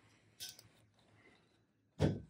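Near silence, with one brief soft rustle about half a second in as fabric and the iron are handled during pressing.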